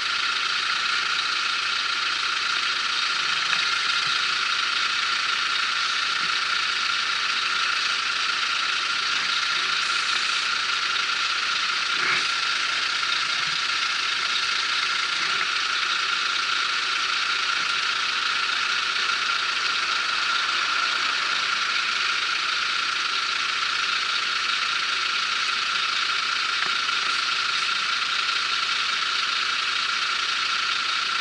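Steady mechanical buzz and rattle from an idling 125 cc scooter, carried through the action camera's mount, with a single click about twelve seconds in.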